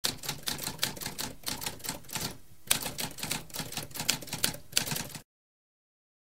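Typewriter typing: rapid key strikes, several a second, with a brief pause about halfway, stopping abruptly about five seconds in.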